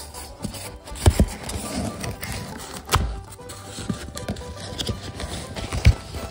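Background music, with a cardboard box and its styrofoam packing being handled: rubbing and a few sharp knocks, at about one, three and six seconds in.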